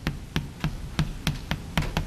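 Chalk striking and tapping on a blackboard as it is written on: an uneven run of short, sharp clicks, about three or four a second.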